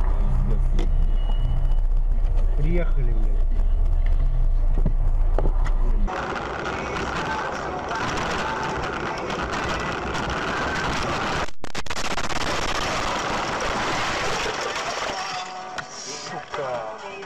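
Car interior noise from dashcams. A loud low rumble of engine and road runs for the first six seconds. After a cut it becomes a steady hiss of tyres and wind at speed on a snow-covered road, broken by a brief gap of silence near the end.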